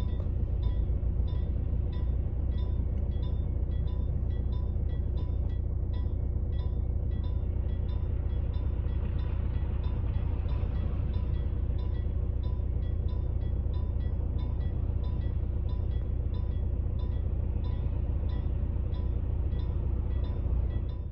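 Level-crossing warning bell ringing steadily at about two strikes a second, heard from inside a waiting car over the low rumble of the cabin and idling engine.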